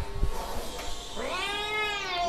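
A cat meowing: one long meow that rises in pitch and then holds, starting just over a second in, after a light knock or two.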